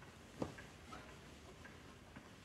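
Faint, steady ticking, with one louder knock about half a second in.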